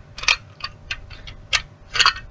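Plastic toy truck being handled in small hands: a few irregular, sharp clicks and rattles of hard plastic.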